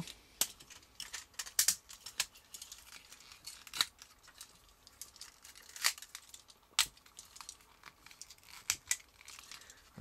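Plastic toy parts of the Green Raker transforming train robot clicking and snapping as they are folded, rotated and locked into place by hand: irregular sharp clicks over soft handling rustle.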